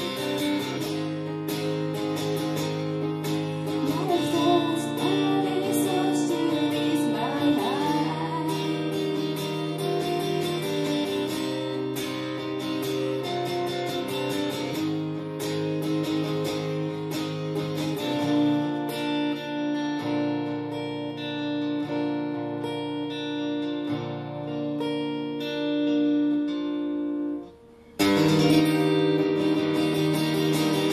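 Acoustic guitar played live, chords picked and strummed. The playing breaks off for a moment near the end, then comes back in louder.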